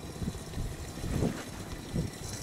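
Wind buffeting the microphone, an uneven rumbling noise.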